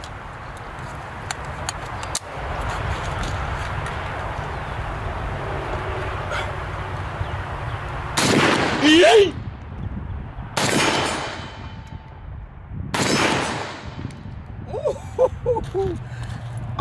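Pioneer Arms Hellpup 7.62x39 AK pistol fired in semi-auto, four single shots spaced one to two seconds apart starting about halfway through, each followed by an echo. Before the shots there is only a steady low rumble.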